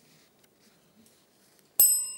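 Near silence, then about two seconds in a single bright electronic bell chime from the quiz show's signalling system strikes and rings on with several clear steady tones, fading slowly.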